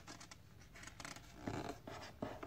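Faint rustling and scratching of fingers on the paper pages of a hardback picture book as it is held open, in several short scrapes, the loudest about one and a half seconds in.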